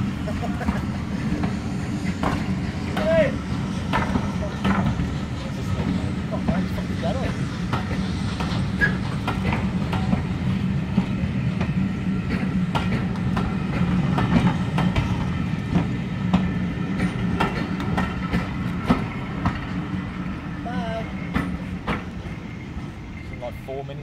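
Passenger coaches of a ten-coach train rolling past on the track, with a steady low rumble and the clicks and knocks of wheels over rail joints. The sound fades near the end as the train moves away.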